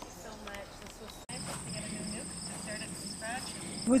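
Crickets trilling in a steady, high, pulsing chorus that starts abruptly about a second in, with faint voices of people talking underneath.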